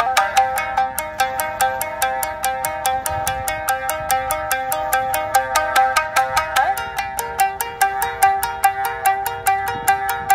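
Three shamisen played together in a fast, driving piece, starting suddenly with an even run of sharply plucked, twangy notes. About two-thirds of the way in a note slides up and a lower repeated note joins the pattern.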